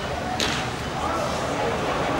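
Crack of a wooden baseball bat hitting a pitched ball, a single sharp strike about half a second in, over the murmur of the ballpark crowd.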